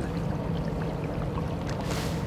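Floodwater flowing steadily through a concrete box culvert and swirling around the wading rod of a flow meter held in the current, with a low steady hum underneath. A brief rustle sounds near the end.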